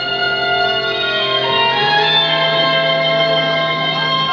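Instrumental introduction of a recorded backing track played over the hall's loudspeakers: long held notes over a bass note that steps up about two seconds in.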